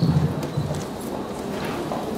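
Handheld microphone being handled and set back into its stand clip: a few soft knocks and rubs.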